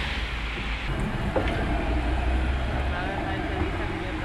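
Street ambience: a steady low rumble of vehicles, with a hiss that drops away about a second in and faint voices further off.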